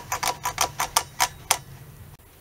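A Stratocaster-style pickup selector switch clicking as it is flicked back and forth through its positions, about four to five clicks a second, to work contact cleaner into its contacts. The clicks stop about a second and a half in.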